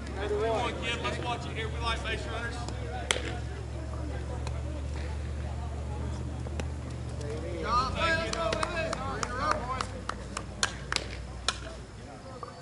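Men's voices calling out on a slowpitch softball field, with sharp knocks of bat and ball scattered through, a single one about three seconds in and a quick run of them near the end, over a steady low hum.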